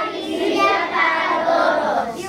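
A class of young children's voices together in unison, chanting a flag pledge with hands on hearts.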